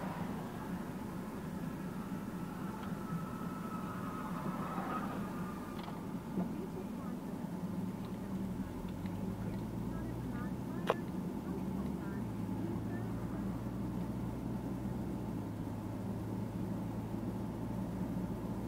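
Car engine hum and road noise heard inside the cabin while driving, the low hum growing stronger about eight seconds in and again about twelve seconds in. A single sharp click about eleven seconds in.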